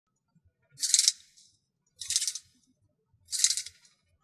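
A pair of 3D-printed plastic gears rolled around each other by hand, rattling three times in short bursts about a second and a quarter apart as the parts mesh.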